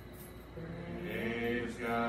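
Slow worship singing: a voice holding long, steady notes, coming in about half a second in and growing louder towards the end.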